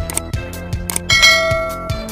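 Outro music with a steady beat, two short clicks, and then, about a second in, a bell-like ding that rings on. These are the sound effects of an animated subscribe button being pressed and a notification bell.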